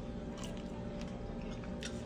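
A person biting into and chewing a firm peeled cooked shrimp, a few faint crunches over a steady low hum.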